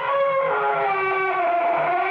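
Radio sound effect of a heavy door slowly creaking, a long drawn-out creak that slides down in pitch.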